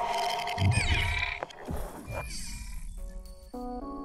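Electronic intro sting: swooshing sweeps and gliding electronic tones with a sharp hit. About three seconds in, a short jingle of separate stepped notes takes over.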